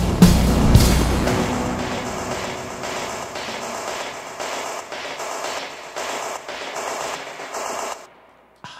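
Live synth-based indie band music. The full mix with bass plays for about the first second and a half, then the low end drops away, leaving a rhythmic noisy pulse that fades and cuts off sharply at the end.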